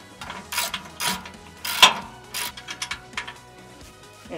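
Socket ratchet wrench clicking in several short bursts as it backs off the nut on a carriage bolt.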